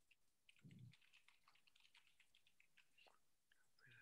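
Faint, quick computer-keyboard typing: irregular key clicks, with a brief low sound about a second in.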